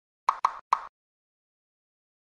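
Three short pops in quick succession from the logo-animation sound effects, the third a little after the first two.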